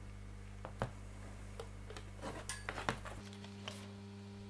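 Faint handling sounds: a few light clicks and taps as a wooden log slice and a hot glue gun are picked up and set against each other on a table, over a steady low hum.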